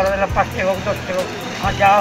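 A person speaking, over a low steady hum.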